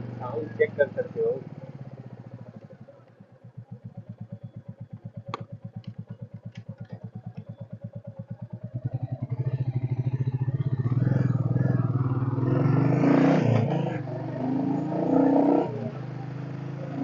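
Royal Enfield Bullet's single-cylinder four-stroke engine thumping with a slow, even beat. About nine seconds in it picks up pace and gets louder as the bike pulls away, with wind rushing over the microphone.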